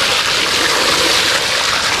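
Water splashing steadily over a plastic toy dump truck as a hand washes the sand off it in shallow water.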